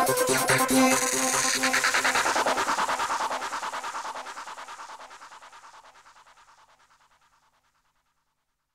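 Electronic psytrance track with a fast, pulsing synth rhythm fading out over about seven seconds to silence: the end of a track.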